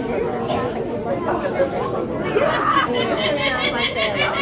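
Overlapping chatter of several people in a large room. Near the end, a rapid, evenly repeated high-pitched sound joins in.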